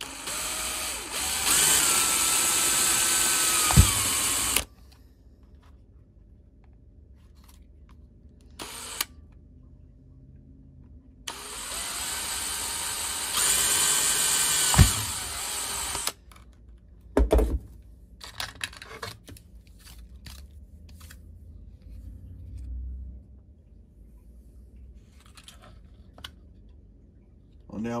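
Cordless drill with a small twist bit drilling pilot holes through a white plastic enclosure lid: two runs of about five seconds each, the motor whine holding steady, with a sharp snap near the end of each run. Light clicks and handling knocks follow in the second half.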